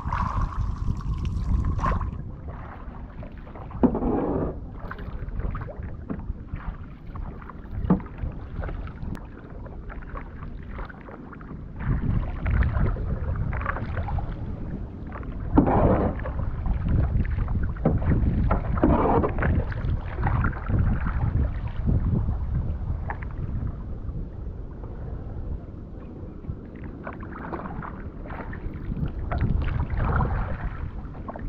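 Kayak paddle strokes and water sloshing along the hull, with several louder swooshing splashes that swell and fade, over a steady low rumble of wind on the microphone.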